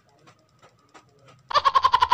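A sudden, high-pitched burst of laughter, in fast quavering pulses, starting about one and a half seconds in.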